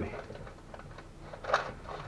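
Light rustling and small clicks of a gloved hand working inside an air fryer basket lined with baking paper, with one louder, brief rustle about one and a half seconds in.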